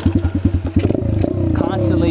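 Chinese dirt bike's engine running while riding at low speed, with a rapid, even beat of firing pulses that blurs together after about a second.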